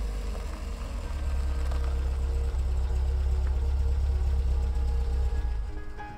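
Car engine running as the car pulls into a driveway: a steady low rumble that builds over the first couple of seconds and cuts off near the end.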